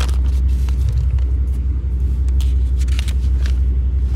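Steady low rumble of the 1991 Cadillac Brougham's 5.0-litre V8 idling, heard from inside the cabin, with light rustling as notebook pages are turned.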